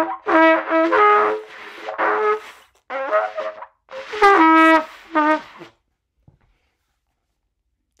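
A trumpet played in a run of short, separate blasts at shifting pitches, the loudest about four seconds in. The blasts imitate an elephant's 'Gr-ICK' call. The playing stops at about five and a half seconds.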